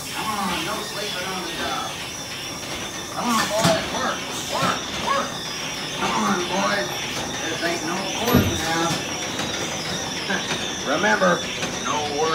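Recorded voices from a dark ride's animatronic show, in short bursts of speech-like sound throughout, over a steady hiss. Near the end a gruff voice says "No work, no grub."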